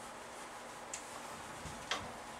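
Two short clicks of a whiteboard eraser knocking against a whiteboard as it is wiped. The first is light, about a second in, and the second is sharper and louder near the end.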